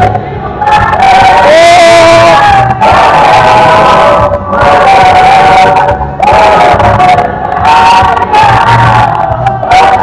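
Congregation singing loudly together, several voices holding long notes.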